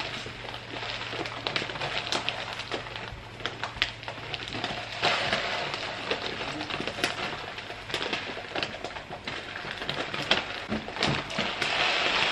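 Brown rice grains pouring from a plastic bag into a plastic storage bin: a steady rushing hiss of falling grains dotted with many small ticks.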